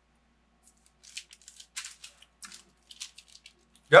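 Close mouth sounds of chewing a small bite of a chocolate-coated snack bar: a run of short, crisp clicks and smacks. A spoken "Yep" comes at the very end.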